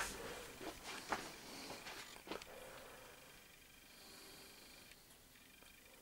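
Faint handling noise of a handheld camera against a fleece jacket: a few soft knocks and rustles over the first two seconds or so, then near silence.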